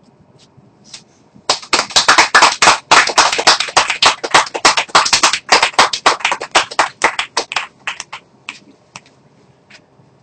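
A small group applauding: dense clapping breaks out about a second and a half in, holds for several seconds, then thins to a few scattered claps and dies away near the end.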